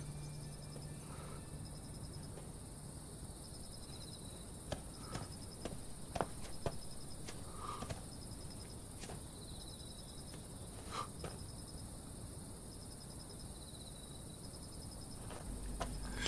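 Crickets chirping at night in short high trains that repeat every second or two, with a lower trill every few seconds. A few faint clicks and knocks come around the middle.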